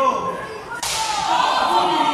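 A single sharp, whip-like slap a little under a second in: a wrestler's open-hand chop landing on his opponent, followed at once by the crowd shouting.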